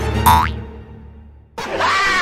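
Background music cut off by a cartoon boing sound effect about a quarter second in, followed by a brief lull; near the end a burst of laughter from an inserted meme clip starts.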